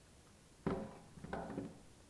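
A man's short spoken exclamation, "Oh," followed by a second brief vocal sound, over quiet room tone.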